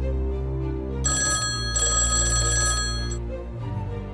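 A telephone ringing: a short ring about a second in, a brief break, then a longer ring of about a second and a half. Background music with a deep steady drone runs underneath.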